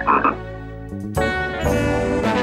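A single short cartoon frog croak from a squashed frog. About a second later, brassy theme music starts.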